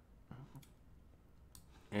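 A few faint, sharp clicks over quiet room tone, with a brief faint murmur of voice.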